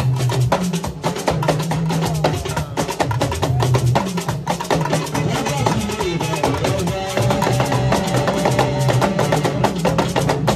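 Yoruba talking drum ensemble playing a fast tungba alujo rhythm: several hourglass talking drums struck with curved sticks in dense, rapid strokes, over deep sustained bass notes, with a held higher note near the end.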